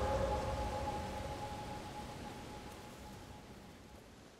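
Background music fading out at the end of a track: a last held chord of two steady tones dies away slowly to silence.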